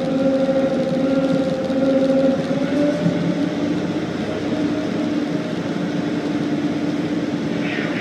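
Tugboat's diesel engines running steadily under load while pushing a barge: a constant drone with a humming tone that rises slightly about two and a half seconds in.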